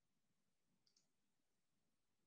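Near silence: faint room tone with two faint clicks close together about a second in.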